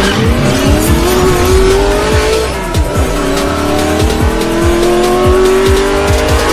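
A race-car engine sound effect revving over electronic intro music. Its pitch climbs, drops about halfway through as if changing gear, and climbs again, over a steady bass-drum beat.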